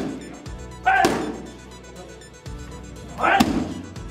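Kicks landing on a trainer's strike pads, twice about two seconds apart, each impact with a short sharp shout, over background music.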